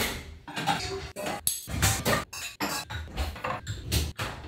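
Dishes and cutlery clinking and knocking as they are cleared from a kitchen counter and stacked, several sharp clinks with brief ringing, over background music.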